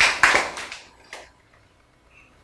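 A small audience clapping, the claps dying out within the first second and leaving near silence.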